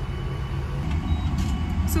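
Low, steady vehicle rumble heard from inside a car cabin, growing louder about a second in.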